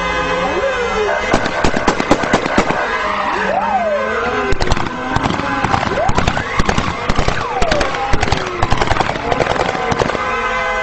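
Many sharp bangs in quick succession, dense from about a second in, over tyres squealing in rising and falling pitches from a car drifting, with voices in the background.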